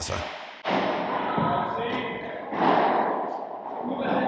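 A padel rally in an indoor hall: dull thuds of the ball off rackets and the court, over a steady murmur of voices and hall noise that starts about half a second in.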